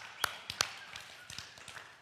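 Hand clapping: a couple of sharp, close claps in the first second, followed by fainter scattered claps that die away.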